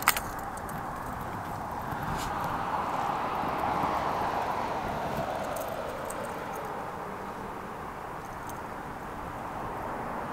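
A vehicle passing by: a rushing noise that swells over a couple of seconds, peaks about four seconds in, then fades. A sharp click of the plastic tackle box comes right at the start.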